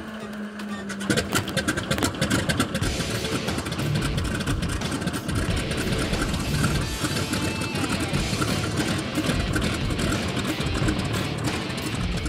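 A vintage biplane's radial engine running, with a rough, steady beat that sets in about a second in, under background music.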